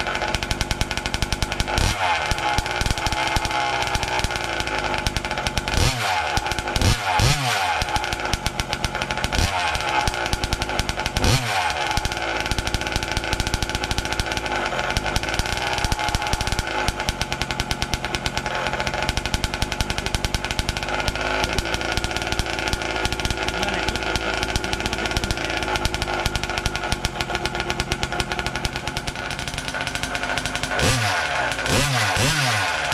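Small two-stroke gasoline engine of a 1/5-scale Kraken RC Vekta.5 car running on its first start. It is revved and falls back several times in the first dozen seconds, then runs steadily.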